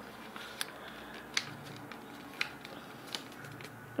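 A sheet of A4 paper being folded and creased by hand: four short, sharp paper crackles or taps, roughly a second apart, over a faint steady background hum.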